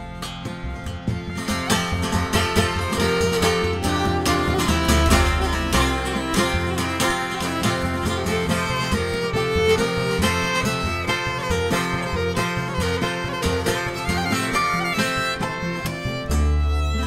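Instrumental break of an acoustic folk band: fiddle playing the melody over a busy acoustic guitar accompaniment.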